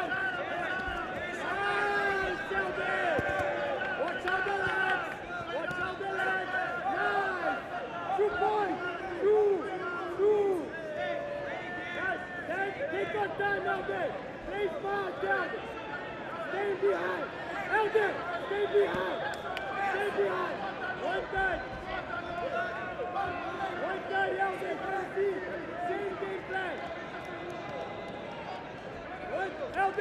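Many voices talking and shouting over one another, a continuous jumble of coaches calling to the grapplers and spectators in the crowd.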